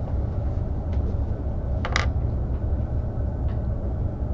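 Steady low room rumble, with one brief sharp noise about two seconds in.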